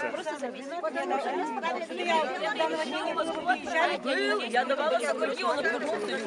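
A crowd of people talking over one another: overlapping, indistinct chatter of several voices at once.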